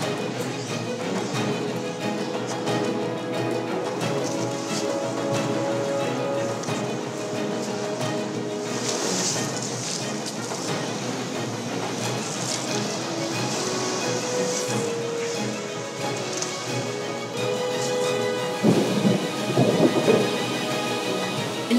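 Heavy rain pouring down in a sudden downpour, with thunder, over background music with long held notes; the rain swells louder near the end.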